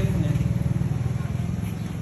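A motor vehicle engine idling: a steady low rumble with a fast, even pulse, easing slightly in level.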